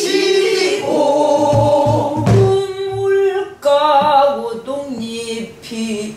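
A Korean sinminyo (new folk song) sung as a slow, held melody. A buk barrel drum is struck a few times with a stick, with low thumps between about one and a half and three seconds in.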